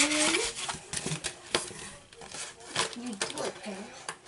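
Plastic craft packaging being handled: rustling with a few light clicks, plus brief murmured voice sounds at the start and near the end.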